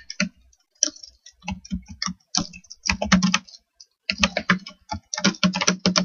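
Typing on a computer keyboard to enter a search: quick, irregular runs of keystrokes with short pauses between them.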